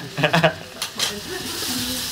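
Gambas frying in a wok over a gas flame, a steady sizzle that comes through clearer in the second half, with a few sharp knocks in the first second.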